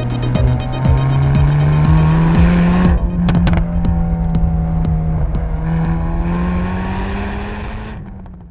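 Hyundai i30 Fastback N's turbocharged four-cylinder engine driven hard, its pitch slowly climbing and bending through the throttle, mixed with soundtrack music. Two sharp cracks come about three seconds in, and the sound fades away near the end.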